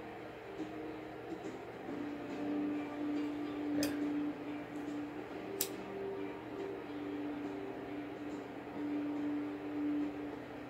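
Soft background music with long held low notes, quiet under the room. Two sharp clicks stand out, about four and five and a half seconds in, from a handheld lighter being struck while a candle is lit.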